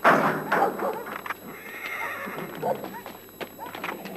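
Animal calls: a loud cry at the very start, then a long, wavering, higher call about a second and a half in.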